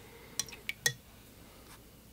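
A paintbrush clinking against a hard container, four quick light clinks in about half a second, the last the loudest.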